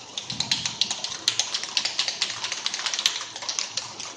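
Aerosol can of penetrant-testing developer being shaken hard, its mixing ball rattling in quick sharp clicks, to stir the settled developer powder back into suspension before spraying.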